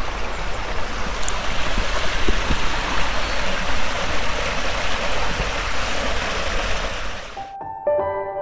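Steady rushing of a small stream flowing through the arches of a stone bridge. About seven and a half seconds in it cuts off abruptly and soft instrumental music begins.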